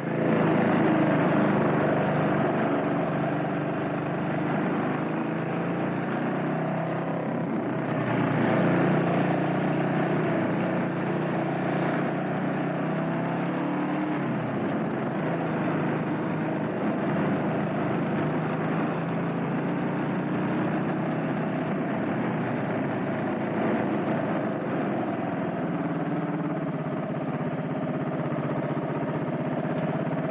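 Honda CB400SS single-cylinder engine running under way at town speed, heard from on the bike. Its pitch rises and falls a little a few times as the throttle changes.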